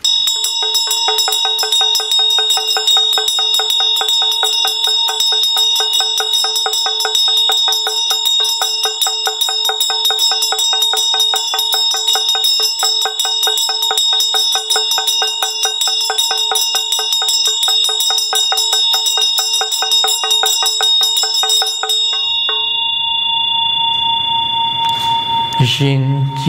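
Tibetan vajra bell rung rapidly and continuously, its clear ringing tones over a fast, dense rattle of strokes. About twenty-two seconds in the rattle stops and the bell is left ringing out. A man's voice begins chanting right at the end.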